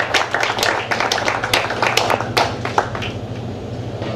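A small audience clapping, the separate claps thinning out and fading over the last second.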